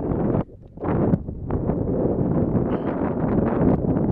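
Wind buffeting the microphone, a loud rough rumble that drops out briefly about half a second in and then runs on steadily.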